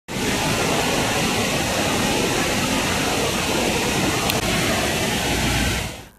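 Steady outdoor noise, an even hiss with no voices, with one faint click about four seconds in.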